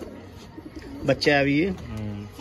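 Domestic pigeons cooing in a loft, with a man's voice heard briefly about a second in.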